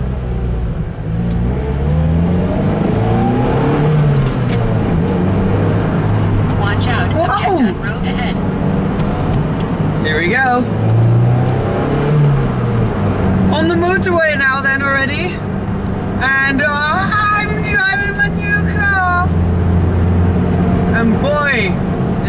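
Lotus Elise's four-cylinder Toyota engine heard from inside the cabin while driving, its revs climbing and dropping back twice as it shifts up, then running steadily at cruise.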